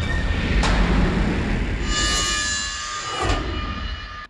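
Dramatic soundtrack effects: a deep, steady rumble with a hit about half a second in and another near the end, and a bright metallic shimmer joining about two seconds in.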